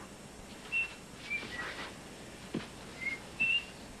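A person whistling a few short, separate notes, with a faint knock about two and a half seconds in.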